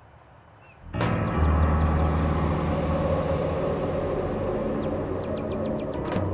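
Dramatic background score music comes in about a second in after a brief near silence, held over a low sustained drone.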